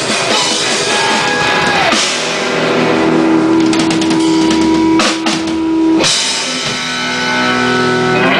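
Live rock band with electric guitars, bass guitar and drum kit playing loudly. About two seconds in, the dense playing gives way to long held, ringing chords with a few drum and cymbal hits.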